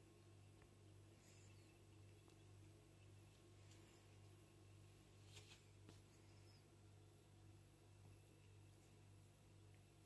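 Near silence: room tone with a faint steady low hum and a couple of faint ticks about five to six seconds in.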